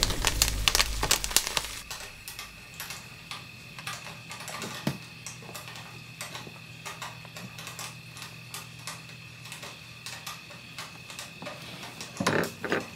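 Jiffy Pop-style foil-pan popcorn popping on a stovetop burner: many irregular sharp pops. A deep rumble fades out over the first two seconds, and a faint steady hum lies underneath.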